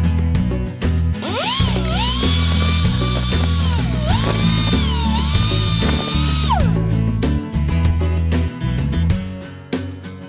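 Die grinder with a small cutoff wheel cutting a steel strap hinge: a high whine that sags in pitch a few times as the wheel is pressed into the cut, starting about a second in and stopping a little past halfway. Background guitar music plays throughout.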